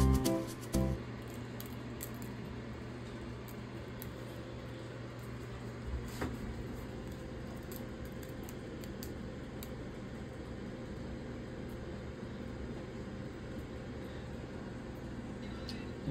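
Background music cuts off about a second in. After that there is a steady low hum with scattered faint clicks and knocks, one a little louder about six seconds in.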